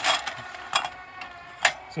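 Atlas-150 wobble clay trap's gear motors whining steadily as the trap keeps oscillating with its timer bypassed, so the motion does not stop. A few sharp mechanical clicks come at the start, at about three-quarters of a second and at about a second and a half.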